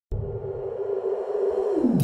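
Electronic intro sound effect: a steady synthesized tone that slowly grows louder, then swoops down in pitch near the end.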